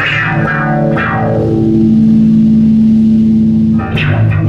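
Live band playing an instrumental passage on electric bass and effects-laden, lightly distorted guitar: notes struck at the start and again about a second in, then a long held note that rings until a fresh attack at the end.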